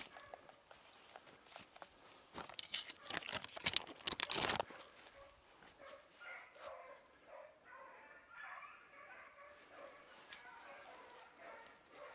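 Dogs barking in short, repeated calls throughout. A loud crackling rustle, like brush being pushed through close by, comes between about two and a half and five seconds in.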